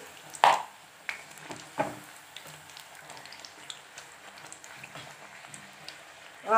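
A puri deep-frying in hot oil in a kadhai, sizzling low and steady with its second side down after being flipped and pressed to puff up. A few sharper sounds come in the first two seconds, the loudest about half a second in.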